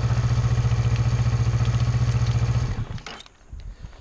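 Kawasaki Versys 650's parallel-twin engine idling steadily, then stopping nearly three seconds in and dying away. A few light clicks follow.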